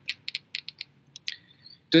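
A quick run of short, sharp clicks, about eight in the first second, then two more a little later.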